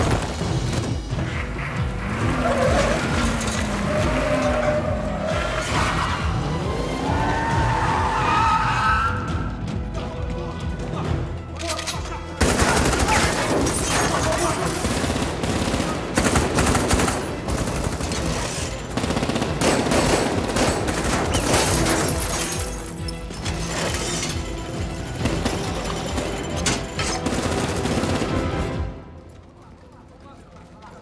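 Action-film sound mix of a Gurkha armored truck smashing through a building wall: crashing debris and many sharp bangs under score music and voices. There is a big jump in loudness about twelve seconds in, and the din drops away abruptly near the end.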